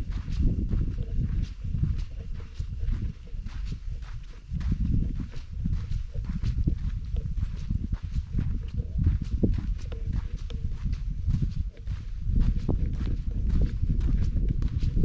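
Footsteps crunching on a dry dirt trail, about two steps a second, over a loud, uneven low rumble.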